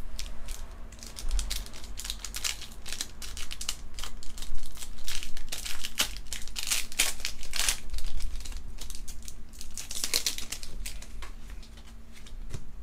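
Foil Pokémon booster pack wrappers crinkling as the packs are handled and shuffled, in irregular rustling spurts.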